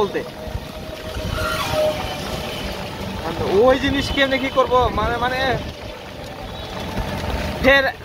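Steady low rumble of wind buffeting the microphone and tyre noise on a wet road, heard from inside a moving open-sided three-wheeler rickshaw in the rain. A person's voice comes in about halfway through and again at the very end.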